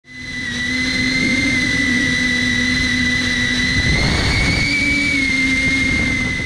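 Small drone's electric motors and propellers whining steadily at a high pitch, fading in at the start and rising slightly in pitch about four seconds in, as heard from a camera mounted on the drone in flight.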